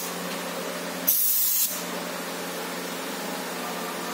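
Gravity-feed airbrush giving one short hissing burst of spray, about a second in and lasting about half a second, over a steady low hum.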